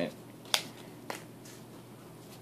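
Two short, sharp clicks about half a second apart, the first louder: trading cards being handled on a tabletop playmat.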